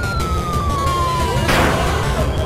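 Falling-whistle sound effect as the crane claw drops: one smooth tone sliding down in pitch for over a second, cut off by a short crash-like burst about one and a half seconds in, over a steady din of hall noise.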